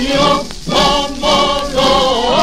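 Male singer with accompaniment singing a line of a Japanese patriotic song, a few sustained sung syllables in a vintage recording.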